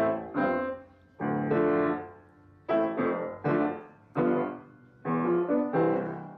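Improvised piano playing: chords struck mostly in quick pairs, each left to ring and die away before the next pair.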